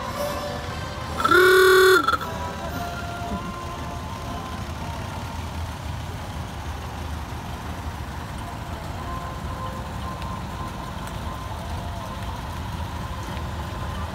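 A vehicle horn sounds once about a second in, a steady blast lasting under a second, over the low rumble of slow-moving parade vehicles passing by.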